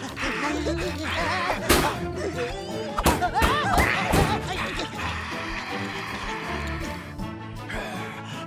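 Cartoon background music with sharp impact sound effects of blows against a vending machine, near two and three seconds in, and wordless cartoon cries.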